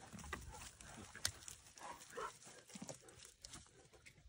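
Faint, scattered short sounds from Cane Corso dogs moving about close by, with a sharp click about a second in.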